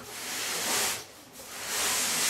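Cardboard shipping box rasping as it is handled: two long hissing sweeps of about a second each, the second near the end.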